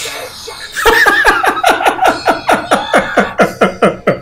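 A man laughing hard: a long, loud run of quick 'ha' bursts, about six a second, starting about a second in.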